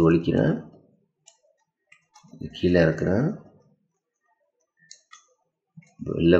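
Plastic Axis Cube puzzle clicking faintly a few times as its layers are turned by hand, between stretches of a man's speech.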